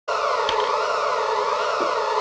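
A siren-like wailing tone on a film soundtrack, cutting in at once. Its pitch glides up and down over a steady droning band.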